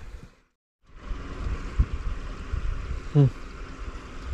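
Steady open-air wind and water noise with low rumbling on the microphone. It drops out to silence for about half a second near the start, and a man gives a short 'hmm' near the end.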